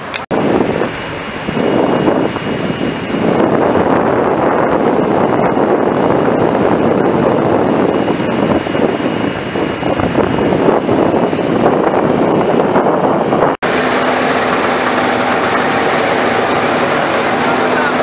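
Claas Medion 310 combine harvester running while cutting standing grain: a loud, steady mechanical noise of engine and threshing machinery. It breaks off for an instant twice, once just after the start and again about two-thirds of the way through.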